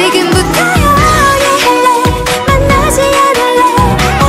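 Upbeat K-pop dance track: a sung melody over a steady electronic beat.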